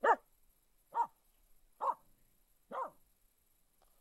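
A Finnish Spitz barks four times, about a second apart. Each bark is short and falls in pitch, and the first is the loudest.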